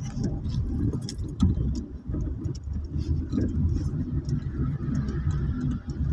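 Low, steady rumble of a car's engine and road noise heard from inside the cabin while driving slowly, with a few sharp clicks about a second in.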